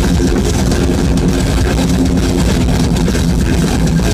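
Live metal band playing a breakdown: distorted electric guitars and bass over drums, loud and bass-heavy, picked up through a phone's microphone.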